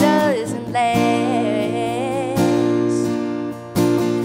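A woman singing over a strummed acoustic guitar. Her voice holds a long, wavering note through the middle while the guitar keeps strumming chords.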